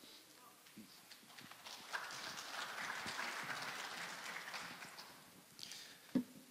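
Light audience applause, a patter of hand claps that starts about two seconds in and dies away near the end.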